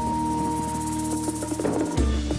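Background music: sustained held notes over a quick, light percussion pattern.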